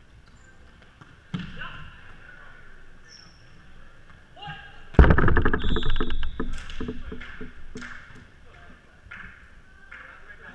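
Volleyball rally in a reverberant gymnasium: a ball contact thuds about a second in. About halfway through comes a loud hit on the ball, with players shouting, and the noise dies away over the next few seconds.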